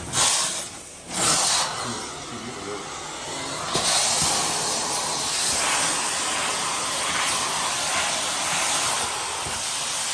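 Carpet-cleaning hot-water extraction wand hissing as it is drawn across ceramic floor tile, spraying and sucking up water. There are two short surges about a second apart at the start, then a steady hiss from about four seconds in.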